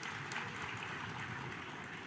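Faint audience applause: a scatter of hand claps that swells early on and fades out near the end.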